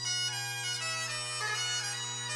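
Bagpipes playing a melody over a steady low drone, the chanter stepping through a few notes.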